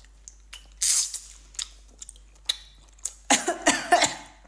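A woman breathes out sharply about a second in, then coughs in a rapid burst near the end. The chili oil has caught in her throat and nose and is very hot.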